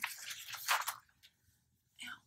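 Rustling and handling noise from rummaging through a bag of knitting projects. It stops about a second in.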